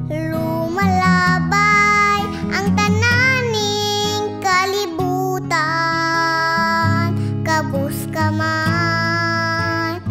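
A young girl singing a Cebuano song over an instrumental backing, holding long notes with a slight vibrato.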